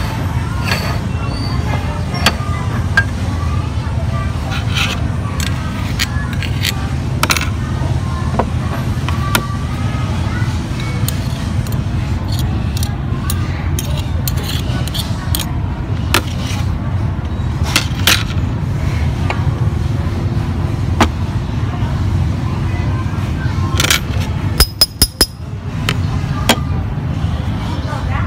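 A metal spoon scraping ground meat off the steel plate of a cast-iron meat grinder, with scattered clinks over a steady low hum. A quick run of sharp metallic clicks comes near the end as the perforated grinding plate is taken off.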